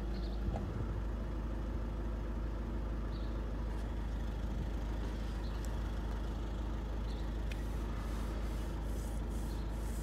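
Car engine idling steadily, heard from inside the cabin as a low, even hum.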